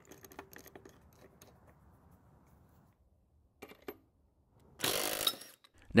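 Faint metallic clicks and clinks of a wrench and a bolt-type flywheel puller being worked on a small mower engine's flywheel, then a louder rasping burst lasting under a second near the end.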